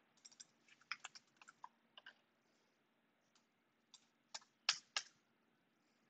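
Faint computer keyboard keystrokes at an uneven pace: a run of light clicks in the first couple of seconds, then a pause, then a few more, the two loudest near the end.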